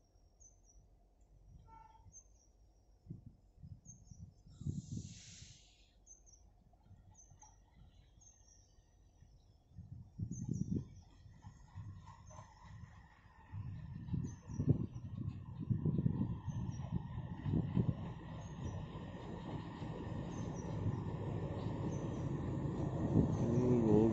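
ALCO WDG-3A diesel locomotive approaching under power with a freight train. Its engine rumble and a steady whine build up over the second half, growing louder toward the end, while small birds chirp faintly.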